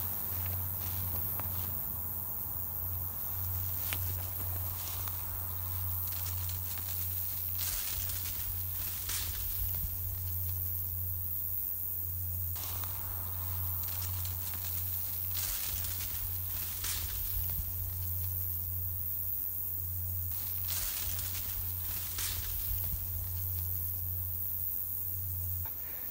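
Footsteps and rustling through tall meadow grass and nettles, coming in short irregular brushes, over a steady low hum.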